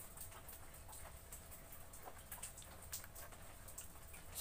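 Quiet room tone: a steady low hum with a few faint, scattered ticks.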